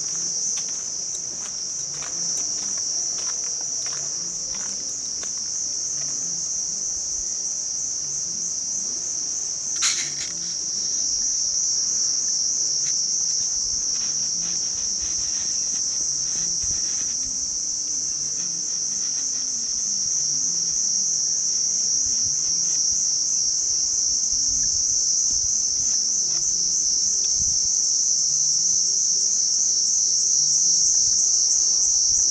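A steady, loud, high-pitched drone of insects singing in the trees, with a slight rapid pulsing, growing a little louder over the second half. A single sharp click sounds about ten seconds in.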